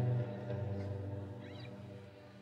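A full band chord on guitars and bass guitar ringing out and fading away. A brief high squeak comes about halfway through.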